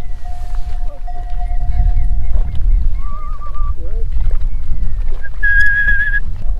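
A Tibetan yak herder whistling to his yak to calm it: a long held low note under wavering higher notes, a short warble about halfway, and a loud high whistle near the end. A low rumble of wind on the microphone runs underneath.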